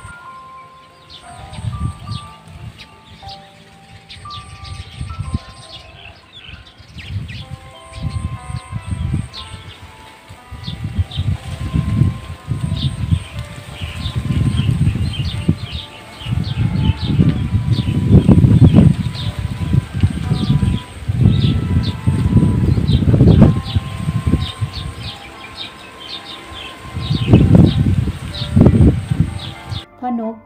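Strong wind buffeting the microphone in irregular rumbling gusts that grow heavier from about ten seconds in, with many short high chirps from small birds, over soft chime-like background music.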